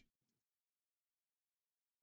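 Near silence: the sound track drops to nothing.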